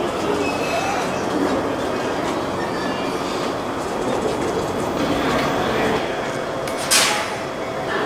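E231 series electric commuter train standing at the platform, its onboard equipment running steadily, with voices. A short, sharp hiss about seven seconds in.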